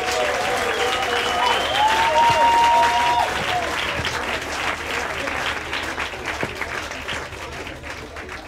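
Audience applauding. A few cheering voices rise over the clapping in the first three seconds, and the clapping swells and then gradually fades.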